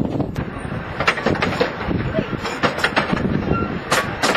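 Narrow-gauge passenger train rolling along, heard from aboard an open carriage: a steady rumble with irregular clicks and clanks from the wheels and couplings on the track.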